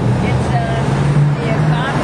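Road traffic: a motor vehicle's engine running close by, a steady low hum that swells slightly partway through, under faint voices.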